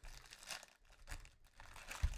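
Faint crinkling and tearing of a trading-card pack's plastic wrapper as it is torn open and the cards are slid out, in a few short irregular crackles.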